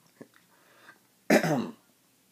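A man clearing his throat once, a short rasping burst about a second and a half in, after a faint click.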